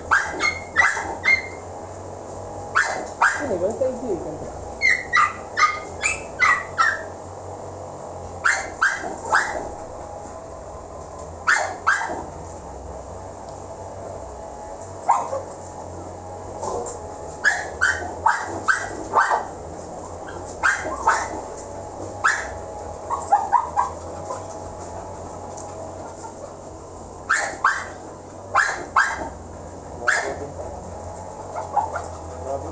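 Dogs barking in short, sharp, high barks that come in clusters of two to five, again and again with pauses of a second or more between.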